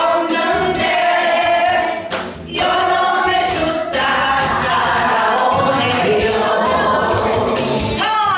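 A woman singing a Korean song through a microphone over a backing track, with a group of voices singing along, pausing briefly about two seconds in.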